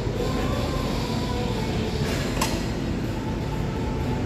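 Steady low rumbling room noise of a gym, with faint steady hums and one sharp click about two and a half seconds in.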